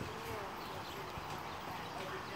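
Hoofbeats of a Tennessee Walking Horse mare gaiting on dirt arena footing, with faint voices in the background.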